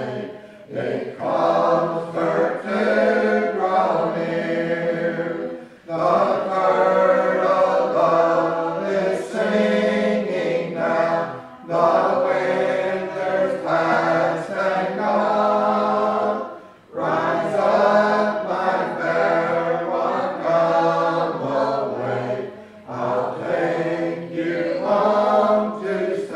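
Church congregation singing a hymn a cappella in several voices, without instruments, in long sustained phrases with brief breaks between them.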